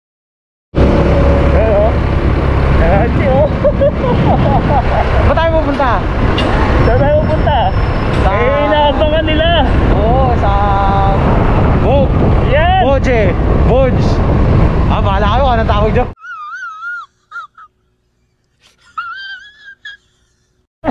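Wind buffeting the microphone of a camera on a moving motorcycle, with road and engine rumble and people talking over it. It cuts off abruptly about 16 s in, and a much quieter stretch with a faint, wavering voice follows.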